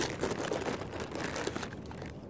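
Clear plastic bag of in-shell peanuts crinkling and rustling as a hand digs through the peanuts and pulls one out. The crinkling starts suddenly and dies down near the end.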